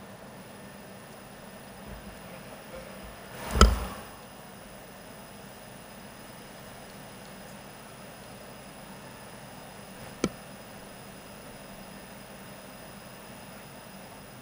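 Steady low hiss of an open podium microphone, with one loud thump on the microphone about three and a half seconds in and a short sharp click about ten seconds in.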